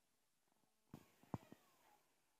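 Near silence, broken by a few faint short clicks and brief faint sounds in the second half.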